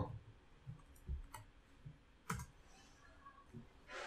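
Faint, scattered computer keyboard keystrokes: about half a dozen separate clicks spread over a few seconds as a short word is typed.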